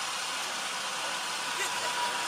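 Steady hissing background noise with no distinct event.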